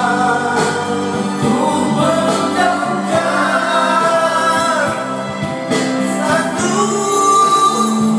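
Karaoke singing: a man sings into a handheld microphone over a karaoke backing track, with held, sustained notes.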